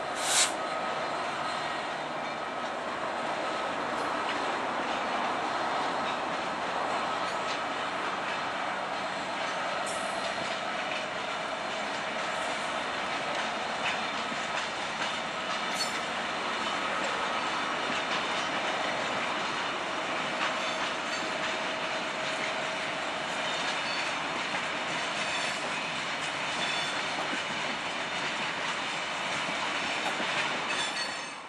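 A GBRf Class 66 diesel locomotive and its train of box wagons carrying scrap roll steadily past, making a continuous noise of wheels on rail with faint steady tones and occasional clicks. A short, sharp, high-pitched sound comes a fraction of a second in.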